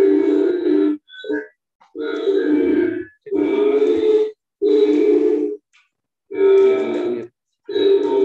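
Music made of held notes, each about a second long, with short breaks between them.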